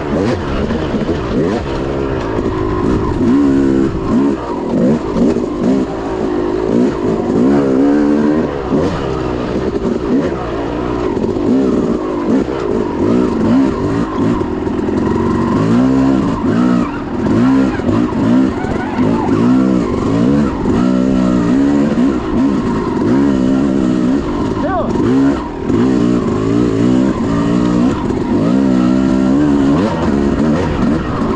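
Dirt bike engine being ridden hard, heard close up from a camera on the bike. The revs rise and fall every second or two as the rider works the throttle and shifts.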